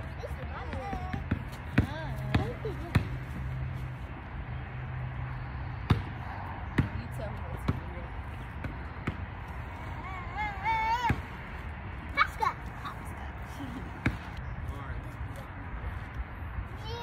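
Basketball bouncing on a concrete sidewalk: a handful of single, spaced-out bounces, with young children's high voices calling out in between.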